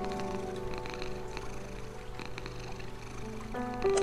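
A domestic cat purring steadily under slow, calm music of long held notes; the music swells as a new chord comes in near the end.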